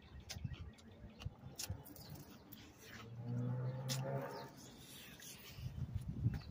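A man's low, closed-mouth groan, held for about a second midway, as he eats a hot pepper and reacts to its heat. Faint clicks come and go around it.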